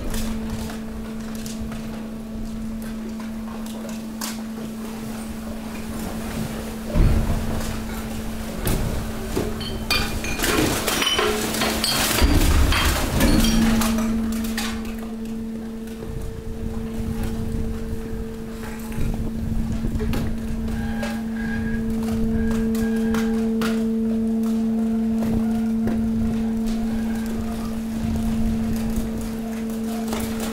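Hydraulic waste compactor running with a steady motor-and-pump hum while mixed waste is pushed and crushed. Plastic bottles, cans and cardboard crunch and clatter, loudest and densest from about seven to fourteen seconds in. The hum drops out briefly twice around the middle and then runs on steadily.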